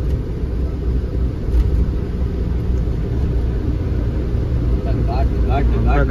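Truck engine and road noise heard from inside the cab while driving, a steady low-pitched drone.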